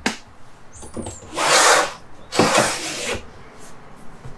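Window shade worked by hand: a click, then two whirring rasps about a second apart, each under a second long.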